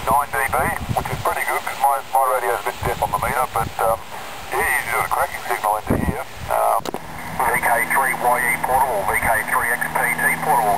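Voices of amateur radio operators received on 40 m single sideband (7160 kHz LSB) through a homebrew transceiver's speaker, thin and band-limited. After a click about seven seconds in, a different voice takes over with a steady low hum beneath it.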